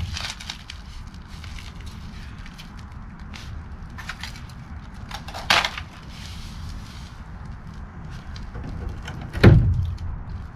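Scattered clicks, scrapes and crackles of rusted sheet-steel debris being handled from a rotted RV basement box, with a sharper knock about five and a half seconds in and a heavy thump near the end, over a low steady rumble.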